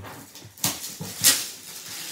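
Shiny gift-wrapping paper rustling and crinkling as a present is unwrapped by hand, in irregular crackles, the loudest about half a second and just over a second in.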